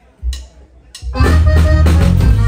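A few light clicks in a brief hush, then about a second in a conjunto band comes in together, loud: button accordion over electric bass, guitar and drums.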